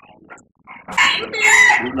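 A rooster crowing once, loud, starting about a second in.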